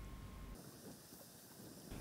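Near silence: faint room tone, with a faint steady tone in the first half-second.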